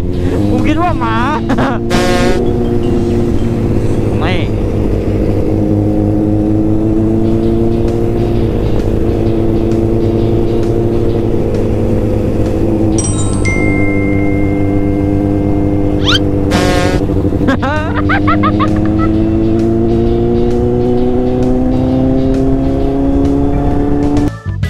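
Kawasaki Z800 inline-four motorcycle engine under way, its pitch climbing steadily as it accelerates, dropping at a gear change partway through and climbing again.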